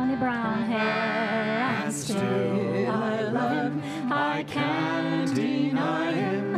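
A woman singing a slow Irish ballad, with acoustic guitar and other string instruments accompanying her.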